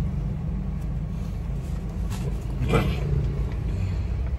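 Steady low rumble of a car's engine running, heard from inside the cabin. A brief spoken exclamation comes about two-thirds of the way through.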